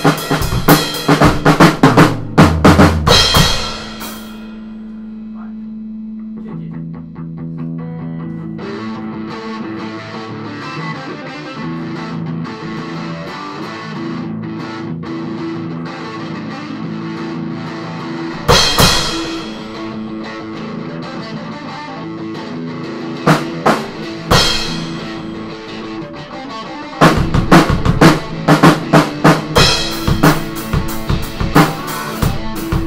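Drum kit played in a fast, dense fill for the first few seconds, then an electric guitar solo: one held note, followed by a long run of single melodic notes. A loud drum-and-cymbal hit cuts in about halfway through, two more hits come later, and the full drum kit comes back in near the end.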